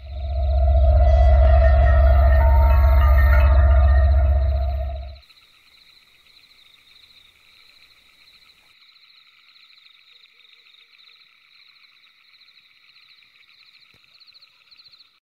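A loud, deep ominous drone with a steady tone above it, a horror-style sound effect, lasting about five seconds and cutting off suddenly. Beneath it and on after it, a faint steady chirring night chorus of insects or frogs.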